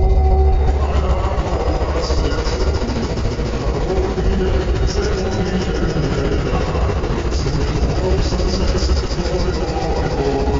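Slowed-down, effects-processed soundtrack of an Oreo Lemon commercial: a dense, warped mix of music and voice with a heavy low end, strongest in the first second.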